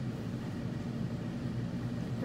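A steady low hum of room background noise, with no clicks or other distinct events.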